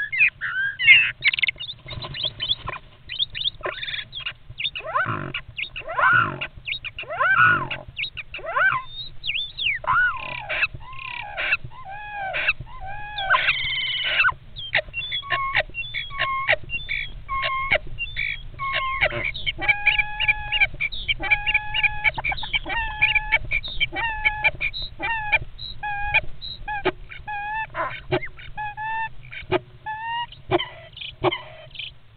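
European starlings calling close to the microphone inside a nest box during a fight: a fast jumble of clicks, chirps and rising and falling squeals, changing about halfway to a run of short repeated whistled notes.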